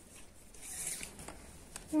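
Cloth tape measure and hands sliding over woven fabric as the tape is laid out for a measurement: a brief soft rasp about half a second in, followed by a couple of faint ticks.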